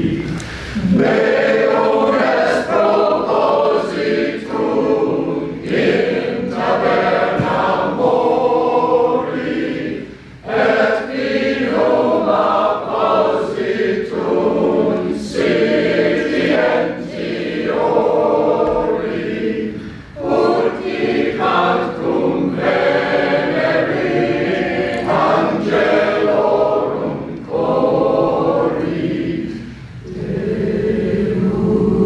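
A small choir of men's and women's voices singing in a church, phrase after phrase, with brief pauses about ten and twenty seconds in.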